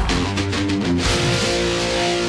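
Short guitar music sting: a few quick plucked notes, then a chord left ringing from about a second in.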